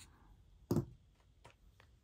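Scissors snipping through a strand of yarn: one short sharp snip about three quarters of a second in, followed by a couple of faint clicks.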